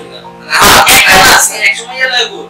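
A person's loud, breathy vocal burst lasting about a second, starting about half a second in, over steady background music.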